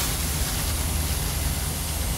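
Pork, shrimp, onion and tomato sizzling in a hot wok, a steady frying hiss.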